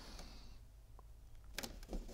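Faint handling of a glued cardstock box being pressed closed by hand: a soft paper rustle and a single light click about a second in.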